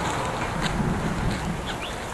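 Steady outdoor background noise with a low hum, and a few faint short bird chirps near the end.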